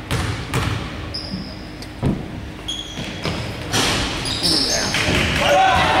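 A basketball bounced several times on a hardwood gym floor, a player's dribbles at the free-throw line, with short high squeaks from sneakers. Voices in the hall grow louder near the end.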